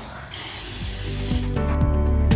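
Lysol aerosol disinfectant spray can sprayed in one continuous hissing burst of about a second. Background music comes in near the end.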